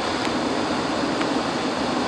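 Steady, even whooshing background noise, like a ventilation fan or air-conditioning unit running, with a faint click about a quarter second in.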